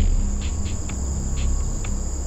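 Crickets trilling steadily at a high pitch, over a deep low hum that sets in suddenly at the start.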